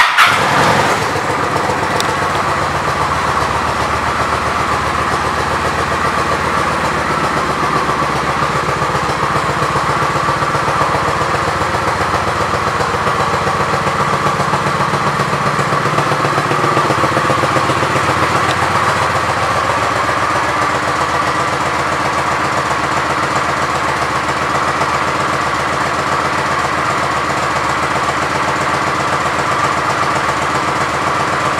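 Kawasaki Vulcan 900's V-twin engine starting with a loud burst, then settling into a steady idle.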